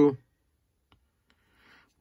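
Two faint clicks about a second in, then a brief soft rustle, as a stack of baseball cards is handled and slid from one hand to the other.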